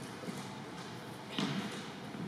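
Fencers' shoes stepping and thudding on a hardwood gym floor during a sword bout, with one sharp knock about one and a half seconds in.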